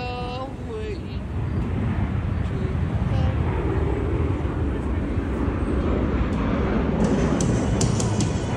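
Low rumble of distant engine noise that builds about a second in and then holds steady, with a few sharp ticks near the end.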